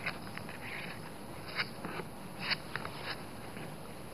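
Hands pressing and smoothing glued fabric onto a cardboard cover. It makes a few soft, brief rubbing sounds over a low hiss.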